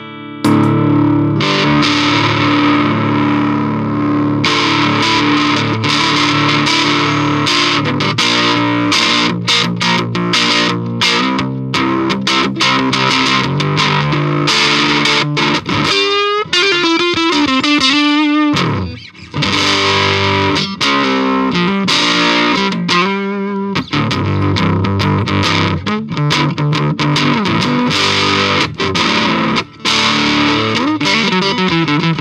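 Electric guitar played through an Electro-Harmonix Hot Tubes overdrive pedal, giving a distorted tone over strummed chords and picked riffs. Partway through, a run of notes wavers and bends in pitch.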